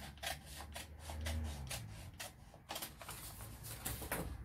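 Scissors cutting through paper: a quick, uneven run of short snips with crisp paper rustling between them.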